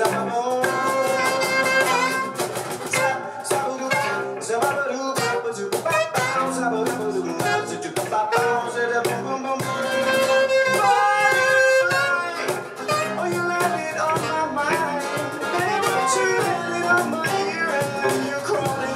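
Live band music: a man singing over a strummed acoustic guitar, with a steady beat underneath.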